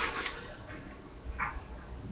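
Faint trickle of a cocktail being poured from a metal shaker into a martini glass, the ice held back without a strainer, with one brief clink about a second and a half in.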